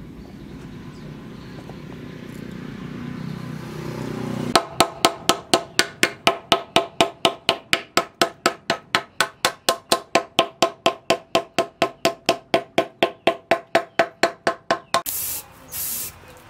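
A small hammer tapping quickly and evenly, about four strikes a second, on the metal pins set through a machete's wooden handle, each strike ringing briefly as the pins are peened to hold the handle on. Near the end the hammering stops and a spray can hisses in short bursts.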